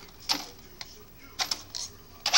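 A Traxxas Slash 4x4 RC truck clattering on its plastic body and chassis after a crash, about four short clicks and rattles spread over two seconds.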